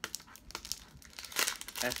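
Thin plastic wrapping crinkling and rustling as it is handled and pulled off a tin sign, with a louder crackle about one and a half seconds in.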